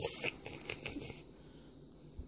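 Fingers crumbling and spreading cooked Italian sausage in a cast iron skillet: faint light crackling and rustling through the first second, after a short hiss right at the start.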